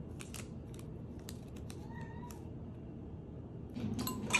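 Paper sweetener packets being torn open and emptied into a mug: light crinkling and tearing clicks. About two seconds in there is one short high tone that rises and falls.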